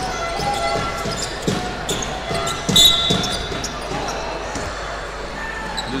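Basketball dribbled on a hardwood court during live play: a run of separate bounces, with a brief high-pitched sound about three seconds in.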